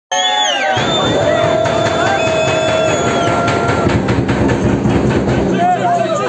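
People shouting at a football match, with long drawn-out calls held on one pitch in the first half, over a steady low rumble of wind on the microphone.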